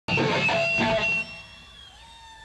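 Electric guitar strumming chords; a little past a second in the playing stops and the last chord rings on, fading.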